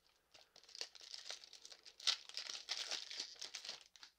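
A Pokémon card booster pack's foil wrapper being torn open and crinkled: a dense, high crackling rustle that starts about half a second in and stops just before the end.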